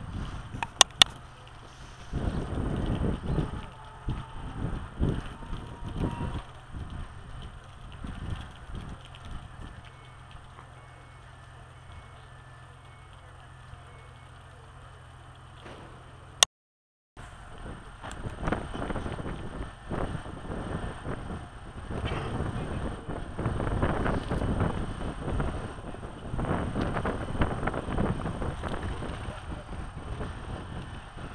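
A diesel railcar idling in the distance, heard as a steady low hum, under irregular outdoor noise. There are two sharp clicks about a second in and a short dropout about halfway through.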